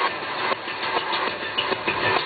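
Live electronic music from laptops and controllers, in a dense, noisy passage with little bass. A low bass line comes back right at the end.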